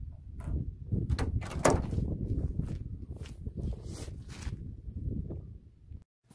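Wind buffeting the microphone in a heavy low rumble, with several short knocks and clatters over it, bunched about a second in and again around four seconds.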